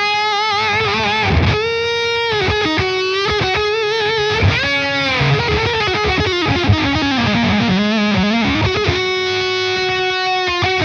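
Electric guitar, a Fender Stratocaster through a fuzz pedal, playing a lead line of sustained, distorted notes with wide vibrato and bends.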